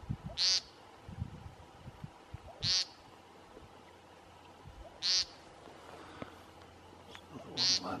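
American woodcock giving its nasal, buzzy 'peent' call four times, a short call about every two and a half seconds. This is the male's ground call in its spring courtship display.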